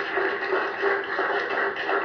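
A small group of people applauding, with a steady held tone underneath.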